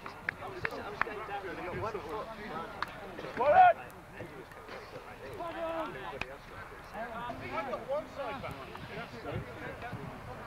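Several American football players' voices calling and talking over one another across the field, with one loud rising shout about three and a half seconds in. A few brief sharp knocks come in the first three seconds.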